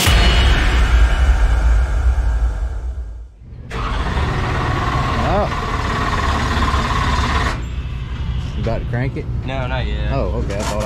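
A loud boom with a rumbling tail over about three seconds, the sound effect of an animated intro logo, cut off sharply. Then a steady low rumble and hiss of outdoor pit noise, with a man's voice beginning near the end.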